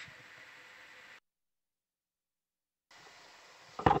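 Faint steady hiss of an open intercom or microphone line that cuts out to dead silence about a second in and comes back nearly two seconds later; a man starts speaking right at the end.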